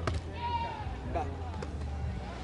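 Sharp slaps of a hand striking a volleyball: one at the start and one more about a second and a half in. A short call from a player comes in between.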